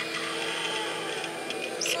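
Motor of an animatronic Halloween prop whirring steadily as it leans forward toward a face, with a short laugh near the end.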